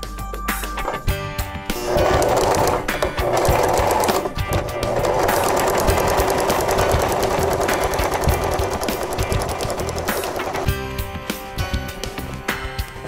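Electric sewing machine stitching a seam through layered fabric, a fast steady run of needle clicks over the motor hum. It starts about two seconds in, pauses briefly, runs on, and stops shortly before the end.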